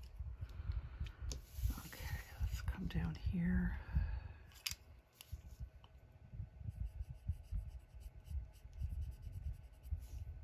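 Colored pencil shading on paper: short, quick scratching strokes repeated through the second half. Earlier, the sheet is handled and shifted, with a brief muffled voice-like murmur about two to four seconds in.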